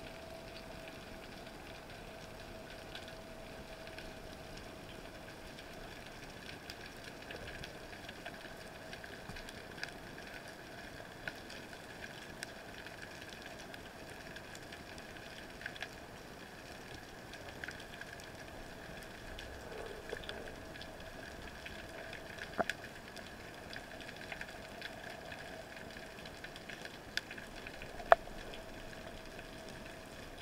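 Faint underwater ambience picked up by a diver's camera: a steady low hum with scattered sharp clicks and ticks, the loudest click about two seconds before the end.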